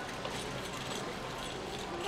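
Small toy metal shopping cart pushed along a concrete floor by a toddler, its little wheels and wire basket rattling lightly in an irregular clatter, together with her footsteps.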